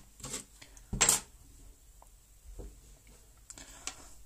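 A few brief knocks and clicks of things being handled on a wooden workbench, the loudest about a second in, with smaller ones later.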